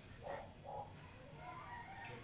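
Animal calls: two short, rough calls, then a longer pitched call in the second half.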